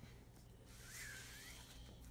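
Faint rustle of paper as a book is picked up from a table strewn with pamphlets, a soft noise lasting about a second in the middle of near silence.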